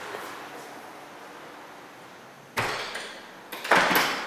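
A glass-panelled back door being opened and shut: low background noise, then a sudden knock about two and a half seconds in and a louder bang near the end.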